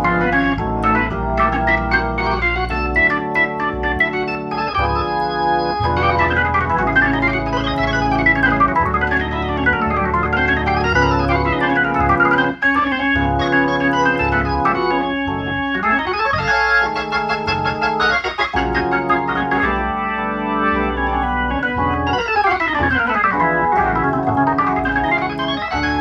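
1955 Hammond B-3 tonewheel organ played through a Leslie 122 speaker: sustained chords over a moving bass line, with quick runs up and down the keyboard, in a neo-soul/gospel style.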